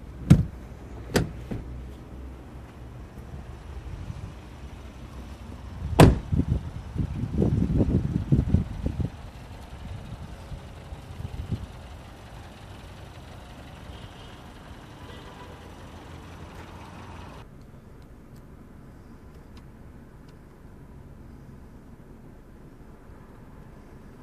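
Two sharp clicks of a car's interior being handled, then a car door slamming shut about six seconds in, followed by a few seconds of bumps and knocks. After that only a steady low background hum with no clear events.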